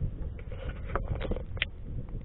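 Wind buffeting the microphone in irregular gusty thumps, with a short run of clicks and rustles from the camera being handled about a second in.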